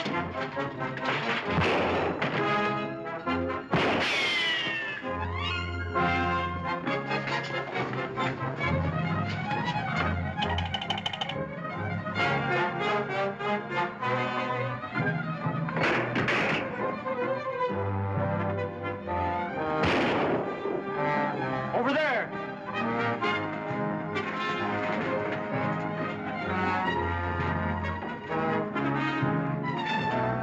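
Dramatic orchestral film score led by brass, running throughout. Several sharp hits cut through it, about two and four seconds in and again around sixteen and twenty seconds.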